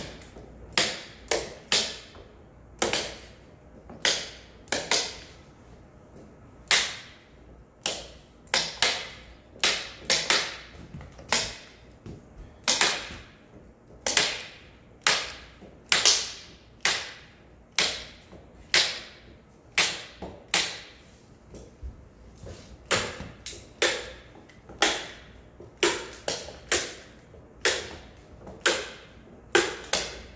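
Sharp, irregular clacks, roughly one or two a second, from hand tools working along the rim of a paper-covered octagonal stage panel as the hanji paper is fixed and finished at the edge.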